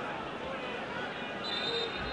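Steady stadium crowd noise from the stands in a live football broadcast, with a faint high steady tone near the end.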